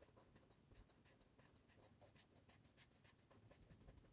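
Very faint back-and-forth strokes of a felt-tip marker colouring on paper, barely above silence.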